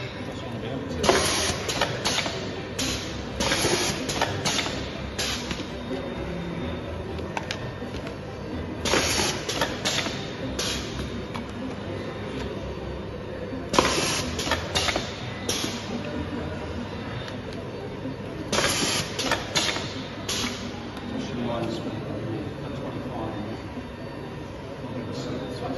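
Pneumatically driven volumetric pasta depositor cycling over a steady machine hum. Every four to five seconds comes a group of short, sharp air hisses and clacks as it doses pasta into bowls.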